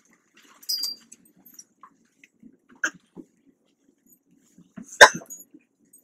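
Classroom movement noises: a short high squeak near the start, a click about three seconds in, and a loud sharp knock about five seconds in as a student gets up from a classroom desk and chair.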